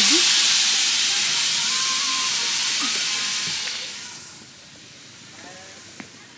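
A loud steady hiss that fades away about four seconds in.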